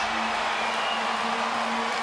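Basketball arena crowd cheering and applauding a home-team alley-oop finish, with a steady low tone held underneath.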